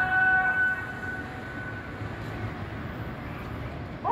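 Muezzin's call to prayer (adhan) sung over a minaret loudspeaker: a long held note ends about a second in. A quieter pause follows, with only a steady background, before the next phrase.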